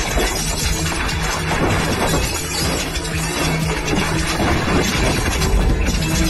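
Window glass shattering and debris crashing as a decontamination pot explodes, a dense, unbroken din over background music.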